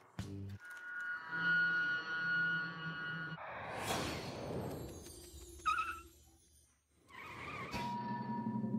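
Electronic end-of-show logo music: a held chord, then a whooshing swell about halfway through, a brief high squeak a couple of seconds later, and a second swell near the end that leads into a new held tone.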